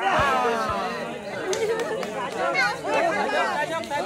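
Several men talking and calling out over one another in loud, excited chatter, with a couple of dull low thumps in the first second.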